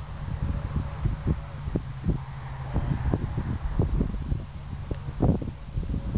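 Wind buffeting the camera microphone in irregular gusts, a rough low rumble with frequent short puffs.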